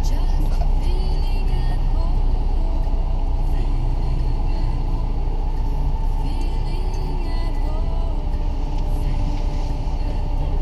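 Steady low rumble of a car's engine and road noise heard from inside the cabin while crawling in slow traffic.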